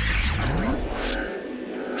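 Logo-intro sound effect: a car engine revving with whooshes, its pitch rising about half a second in over a heavy low rumble that drops away about a second and a half in.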